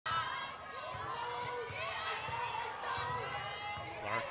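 Basketball being dribbled on a hardwood court, repeated bounces under a steady background of voices in the gym.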